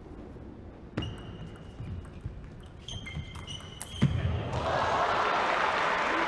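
Table tennis doubles rally: a few sharp clicks of the ball striking bats and table, and brief high squeaks of players' shoes on the court floor. About four and a half seconds in, the crowd bursts into loud applause and cheering as the point ends.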